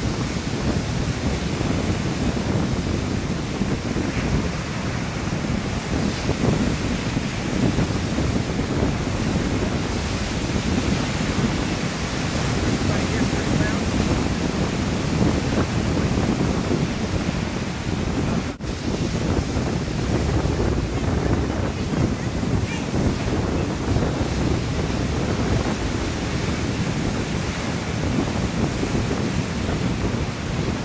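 Steady rush of ocean surf with wind buffeting the camera microphone.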